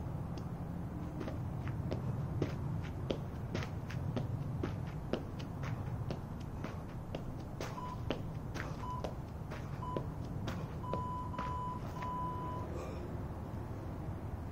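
A jump rope slapping the pavement in quick clicks, about two to three a second, fading out after ten seconds or so. Over it an interval timer beeps three short beeps a second apart, then a longer beep, the usual countdown to the end of a timed round.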